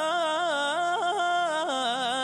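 A man singing an Arabic Eid song, drawing out one long ornamented phrase whose pitch winds up and down.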